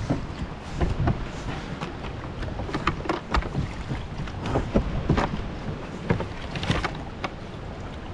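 Largemouth bass splashing and thrashing at the water's surface beside a kayak in irregular bursts, over a low rumble of wind on the microphone.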